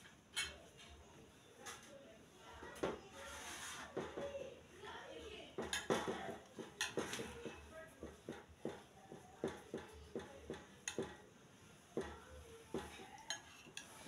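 A metal spoon clinking and scraping against a plate as rice and tomato stew are mixed, in many short, irregular clicks.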